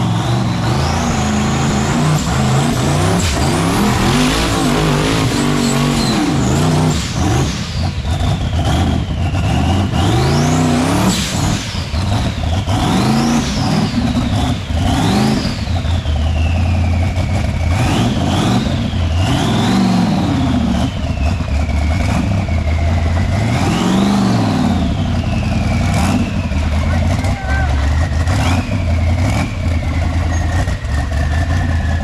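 Rock bouncer buggy's engine revving hard again and again as it climbs a steep rock face, its pitch shooting up and dropping back roughly every one to two seconds.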